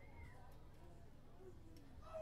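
Near silence: faint room tone with a brief, faint high squeak-like glide about a quarter second in.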